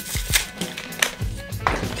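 A fidget spinner's cardboard and plastic packaging being torn open by hand, with a few sharp crinkles and rips, over background music.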